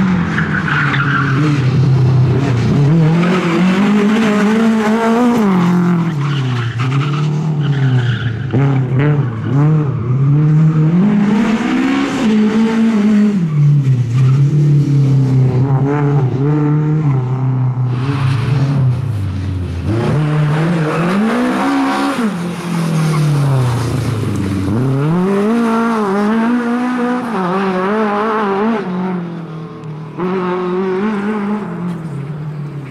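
Lada 2107 rally car's four-cylinder engine driven hard, its pitch climbing under full throttle and dropping off again and again through gear changes and braking for the turns.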